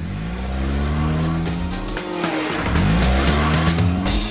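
Cartoon car engine sound effect revving up as the car speeds off, its pitch rising, easing off, then rising again in a second rev.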